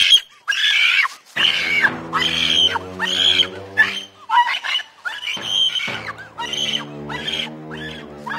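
A woman screaming and wailing in a rapid string of anguished cries, each a second or less, with short breaks between them, over a sustained music score of held low notes.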